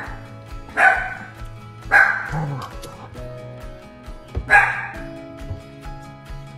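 A dog barking in a few short, separate barks over background music with a steady beat.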